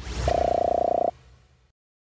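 Outro sound effect: a whoosh, then a buzzy honk lasting under a second that cuts off and trails away.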